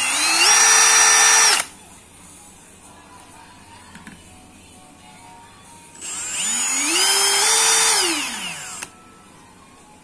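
Milwaukee M18 Fuel 2804-20 brushless hammer drill, set to hammer mode, running free in the air twice. First it spins up quickly to a steady high whine and stops short about a second and a half in. A few seconds later the trigger is eased on for a slow rise in pitch, held for about a second, then eased off into a falling whine.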